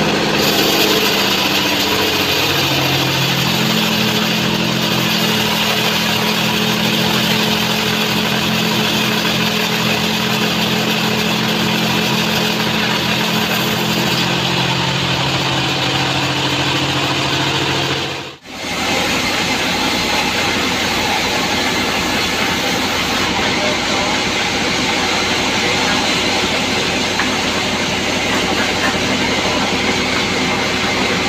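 Large log band sawmill running and sawing a big log, a loud steady mechanical noise with a low hum whose pitch shifts during the first half. The sound drops out for an instant about two-thirds of the way through, then the machine noise carries on.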